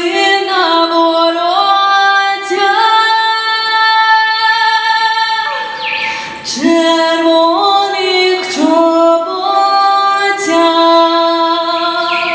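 A woman singing solo into a microphone, holding long notes that step up and down in pitch, with short breaks between phrases.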